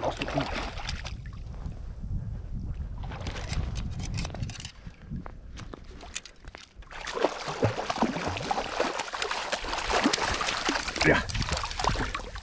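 Water splashing and sloshing as a hooked sea trout thrashes at the surface and a landing net goes into the shallows, busiest in the second half. Under it runs a low rumble of wind on the microphone.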